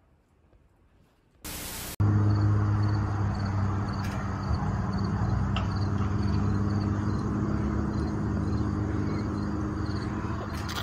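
A short burst of hiss about one and a half seconds in, then a steady low motor hum, like an engine running, that lasts the rest of the time.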